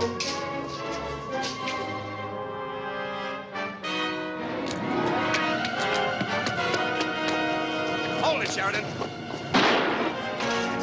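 Tense orchestral film score playing, with a single loud gunshot near the end.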